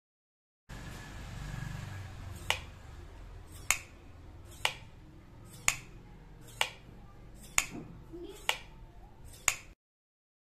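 A wall switch clicking eight times, about once a second, as a micro servo flips it back and forth between on and off, over a low background hum.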